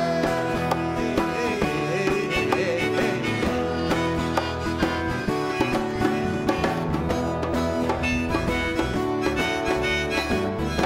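Live band playing an instrumental passage: acoustic guitar, bass and hand percussion keep a steady beat under a melody line.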